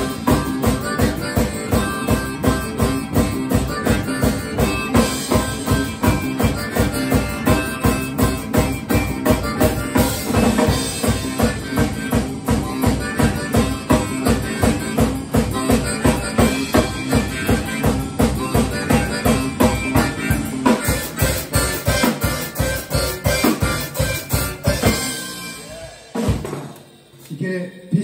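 A live band plays with a steady drum beat, electric guitars and bass guitar, with a harmonica played into a cupped microphone. The band stops about 25 seconds in and the sound dies away.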